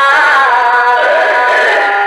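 A voice singing a devotional hymn in long held notes that waver and slide from one pitch to the next.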